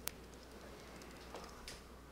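Faint clicks of laptop keys being typed: one sharp click at the start, then a few softer ones, over a low steady room hum.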